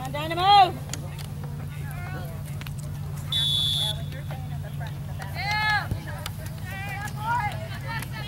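A referee's whistle blown once, a single short steady blast about three seconds in, between loud, high-pitched shouts, one near the start and another just past the middle. A low steady hum runs underneath.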